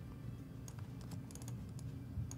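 Faint computer keyboard keystrokes: a scattered run of light clicks in the second half.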